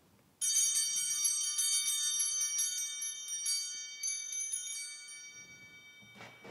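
Altar bells, a cluster of small hand bells, shaken in a rapid bright jingle at the elevation of the consecrated host during the Mass. They come in suddenly about half a second in and ring on, fading slowly over the last seconds.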